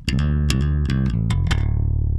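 Dahrendorf Daikatana five-string fanned-fret electric bass played fingerstyle: a quick run of about eight plucked notes, then, about a second and a half in, a low note left to ring.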